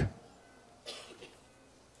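A single short cough about a second in, followed by a fainter sound, against quiet room tone.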